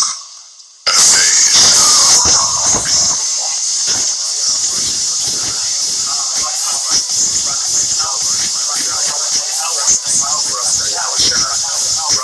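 A muffled voice under a loud, steady hiss, starting suddenly about a second in after a moment of near silence.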